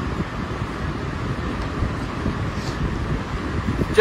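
Steady low rumbling background noise in a room, with no distinct events.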